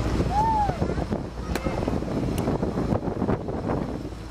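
Wind buffeting the microphone over the low rumble of a moving hayride wagon, with two brief sharp clicks in the middle and a short voice early on.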